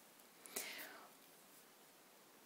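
Near silence: faint room tone, with one brief soft swish about half a second in.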